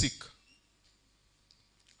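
A man's voice over a microphone ends a word with a hissing "s". A pause of quiet room tone follows, broken by a few faint, soft clicks.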